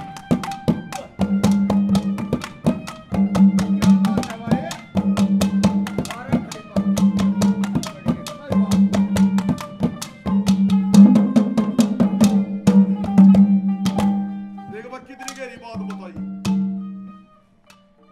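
Instrumental break of a ragini folk song: quick, even drum strokes over a steady held note. The drumming stops about fourteen seconds in and the music thins out.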